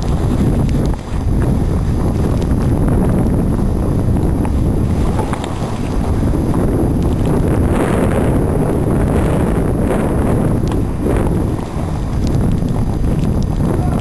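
Wind buffeting the camera's microphone in a steady rumble, mixed with the hiss and scrape of skis running over snow on a downhill run.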